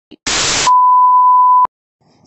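Edited-in sound effect: a short burst of static hiss, then a single steady high beep lasting about a second that cuts off suddenly.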